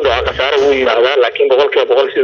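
Speech only: a voice talking steadily over a telephone line.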